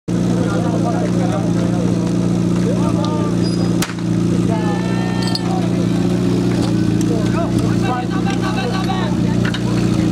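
Portable fire pump's engine running steadily at a constant speed, with people shouting over it. A single sharp click sounds just before four seconds in.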